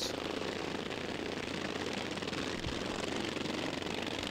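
Racing lawn mowers' single-cylinder engines running steadily with a fast, even pulse, held by their governors to a 3,650 rpm maximum.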